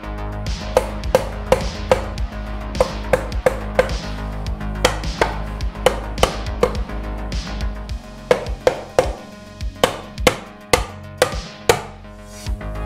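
A mallet tapping a timing cover down onto a VR6 engine block: sharp, irregular strikes, often two to four in quick succession with short pauses between, each with a short ring. Paint in the cover's locating holes keeps it from sliding on all the way. Background music plays underneath.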